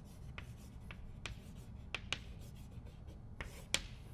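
Chalk writing on a chalkboard: a run of short, irregular taps and scratches as a word is written, with the sharpest clicks about two seconds in and again near the end.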